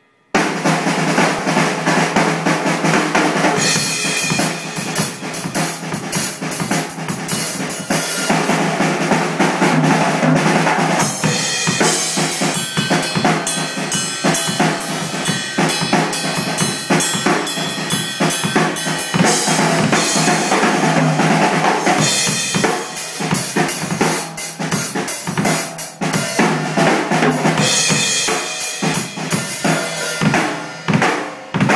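A Tama drum kit played continuously: bass drum, toms and cymbals, starting abruptly just after the beginning, with the snare drum barely picked up by the recording.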